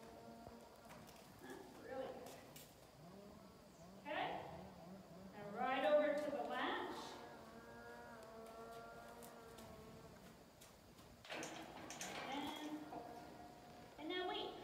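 A woman's voice speaking quietly in a few short phrases, with pauses between them, over the soft hoof steps of a horse walking on arena sand.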